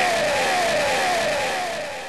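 A man's amplified voice drawing out one long note that slowly falls in pitch and fades, the held end of a recited line, over a hissy background.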